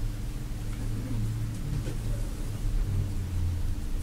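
A steady low hum, with faint scratches of a pen drawing on paper.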